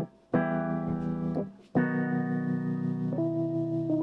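Electric piano playing sustained chords in a song intro. The sound cuts out briefly twice in the first two seconds, and the chord changes about three seconds in.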